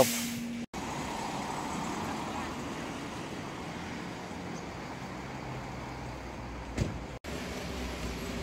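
Steady street traffic noise, an even hum of road vehicles. It is broken by two sudden, brief drop-outs, one just after the start and one near the end.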